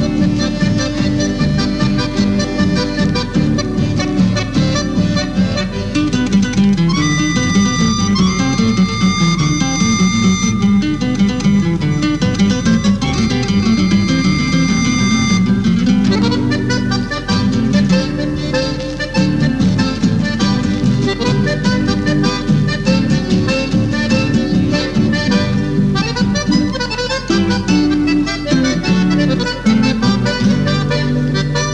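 Chamamé played on accordion with guitar accompaniment. About seven seconds in, a high note is held for roughly eight seconds.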